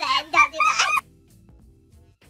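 A person's loud, high-pitched, warbling vocal sound, like a squeal, which cuts off suddenly about a second in. Faint quiet music follows.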